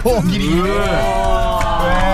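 Several men's voices letting out long, drawn-out cries that overlap one another, each held for about a second with the pitch sliding at the start and end.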